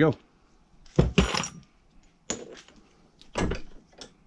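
Four sharp metal knocks, two close together about a second in, then one more about every second, from a sledgehammer and a bearing driver working on an ATV wheel hub clamped in a vise while the front wheel bearing is driven out.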